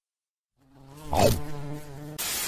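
Cartoon sound effect of a giant bee buzzing: a steady buzz that fades in after a brief silence about half a second in.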